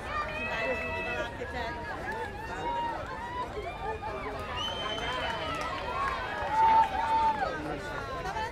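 Many overlapping voices of softball players and onlookers calling out across the field, with one louder held call near the end.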